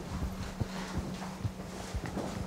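Footsteps on a hard floor, about five irregular steps, over a steady low hum.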